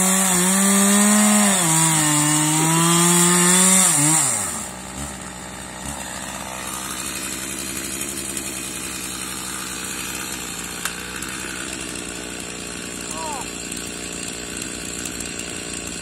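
Chainsaw running at high revs, cutting into a resin-rich fatwood pine stump, its pitch dipping and wavering under load. About four seconds in, the revs fall away sharply and the saw runs on much more quietly, idling.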